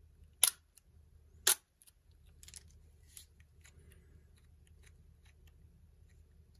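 Nikon SLR shutter firing a one-second exposure: a sharp click as it opens and a second click as it closes about a second later, followed by a few faint ticks.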